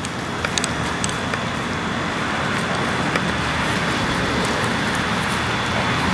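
Steady outdoor background noise, an even rushing hiss that grows slightly louder, with a faint high steady tone under it and a few light clicks in the first second.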